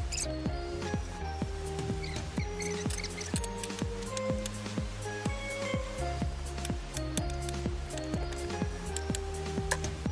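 Background music with a steady beat, held notes and a strong bass line.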